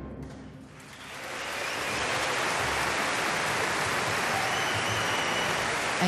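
The last orchestral chord dies away, and about a second in a concert hall audience breaks into applause that builds to steady, full clapping.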